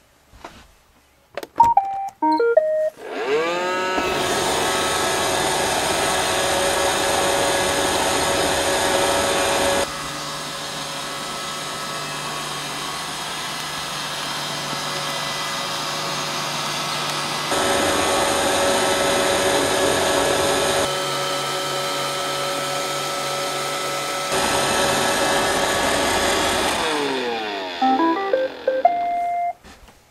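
iRobot Roomba 530 robot vacuum plays a short beep tune, then its brush and vacuum motors spin up with a rising whine and run steadily. Near the end the motors wind down with a falling whine and a second short beep tune plays, the robot's signal that it has returned to its dock.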